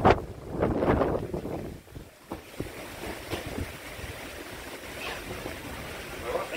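Wind buffeting the microphone outdoors, loudest in the first second with a sharp click right at the start, then settling to a quieter steady rush.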